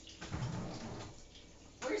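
Lower rack of a dishwasher being pulled out: a short rumble and rattle of dishes lasting about a second, then only a faint steady noise.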